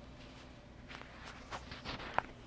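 A few soft footsteps on an indoor floor, starting about a second in and growing quicker and louder toward the end.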